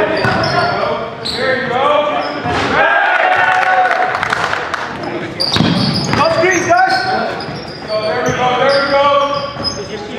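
Basketball being dribbled and bouncing on a hardwood gym floor, with players' voices calling out.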